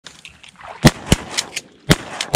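A rapid, irregular string of sharp gunshots, about five in a little over a second. The first loud one comes just under a second in, and each crack has a brief echo.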